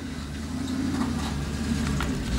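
A motor vehicle engine running nearby, a steady low drone.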